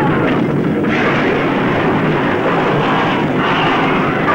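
Loud, steady rumble of a film's earthquake and volcanic-eruption sound effect, played as temple buildings collapse.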